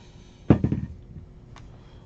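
Metal dice tossed onto the table: a sharp clatter about half a second in that rattles and rings briefly, then one small click near the end.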